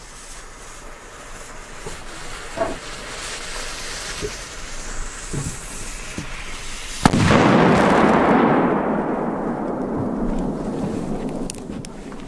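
Large flash-powder firecracker (Polenböller) going off. Its burning fuse hisses for about seven seconds, then a single loud bang comes about seven seconds in, followed by a long rumble and crackle that fades over several seconds.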